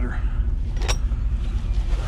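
A vehicle engine idling as a steady low rumble, with one sharp click a little under a second in as recovery straps and hardware are handled in the cargo area.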